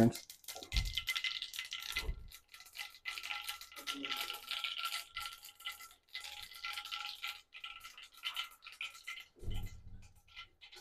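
Cooking oil heating in a kadai on an induction cooktop, crackling and sizzling faintly with many small ticks, over a steady faint high whine.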